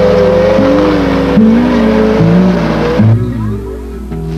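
A car engine running and revving, its pitch rising and falling, over background music. The engine noise drops away about three seconds in, leaving the music.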